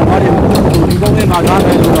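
A man speaking in Burmese over a loud, steady low rumble. Faint, evenly repeating ticks run through the rumble.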